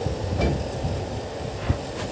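Mahindra Bolero pickup's diesel engine idling, heard as a low rumble inside the cab, with two short knocks as the gear lever is moved into reverse.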